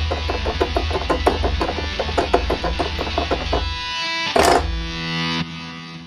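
Korg opsix FM synthesizer playing its 'Purple Dist EG' preset, a distorted electric-guitar imitation that sounds like a guitar, the distortion likely from the synth's amp-modelling effect. It plays rapid repeated notes, about five a second. Then comes a held chord with a brief burst of noise in the middle, and the chord fades down near the end.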